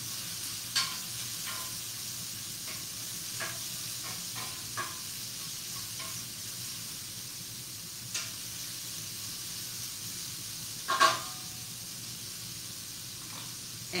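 Sliced apples, onion and kale stalks sizzling steadily in olive oil in a frying pan on medium heat, just starting to sauté so their sugars caramelize. The pan is stirred now and then, with scattered clicks and one louder knock about eleven seconds in.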